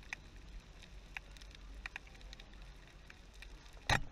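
Faint underwater ambience on a coral reef: a low, even water rumble with scattered sharp clicks, and one louder short knock just before the end.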